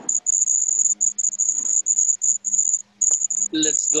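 Cricket chirping in a rapid string of high-pitched pulses, heard through a video-call microphone over a faint low electrical hum. A voice starts near the end.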